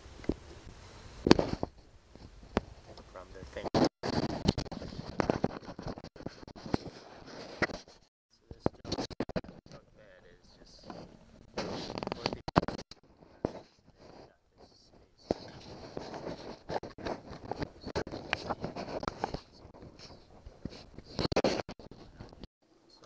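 Hard plastic parts of a ride-on toy being handled and worked loose by hand, making irregular scraping, clicking and knocking with a few sharper knocks.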